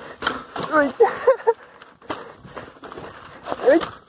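Short vocal exclamations from the rider over the rattle of a lowered bicycle riding a rough, rocky trail, with a few sharp knocks about two seconds in.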